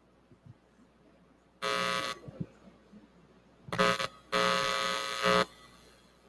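Loud electrical buzz through the PA system, cutting in and out three times (a half-second burst about a second and a half in, then two more near the end, the last about a second long), while a microphone cable is handled and connected: the hum of a microphone plug or lead being connected.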